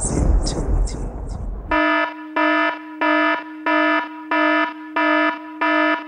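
A loud, buzzy electronic alarm tone pulsing on and off about eight times, roughly one and a half beeps a second. It comes in about two seconds in, as the rumbling intro sound stops.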